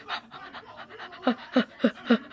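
A child panting in quick, short breaths, faint at first, then louder voiced huffs about three or four a second in the second half, acting out the exertion of training.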